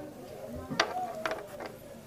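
A few small clicks and rattles of lavalier microphone parts, plastic clips and a plug, being handled, over a faint steady hum.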